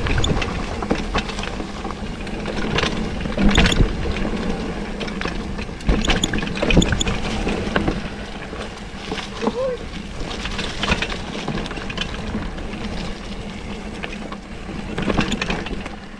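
Mountain bike riding down a dirt forest trail: tyres rolling over packed dirt and leaf litter, with frequent short knocks and rattles from the bike over bumps and wind rumbling on the camera microphone.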